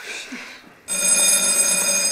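A short hiss, then an electric bell starts ringing suddenly about a second in and keeps ringing steadily.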